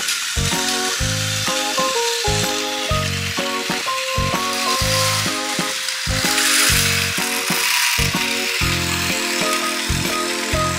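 Background music in a steady run of short chords, over a continuous whirring hiss of battery-powered Plarail toy trains' motors and gears running on plastic track. The whir swells for a moment about six and a half seconds in.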